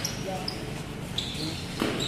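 A basketball bouncing on a concrete court during play, with one sharp bounce near the end, over the chatter of players and spectators.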